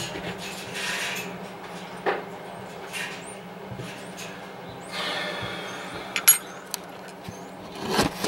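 Hand-tool work on tractor PTO housing parts: scattered metal knocks and scrapes, with a few sharp, ringing metal clinks near the end. A steady low hum runs underneath.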